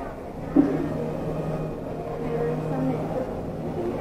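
Indistinct speech that the recogniser did not make out, starting about half a second in.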